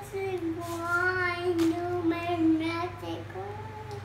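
A young child singing one long drawn-out note, the pitch sagging a little in the middle and coming back up near the end, over a steady low hum.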